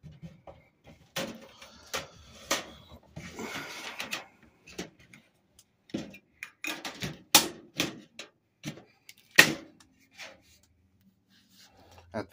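Clamps being handled and fitted onto the frame of a glass terrarium: a string of sharp clicks and knocks, the two loudest about seven and nine seconds in.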